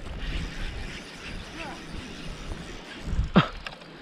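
Spinning fishing reel being handled and wound, its gears and handle clicking, under wind buffeting the microphone. A brief shout about three and a half seconds in.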